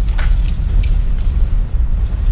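Cinematic logo sound effect: a loud, deep rumbling boom, with a couple of sharp hits higher up, one just after the start and one about a second in.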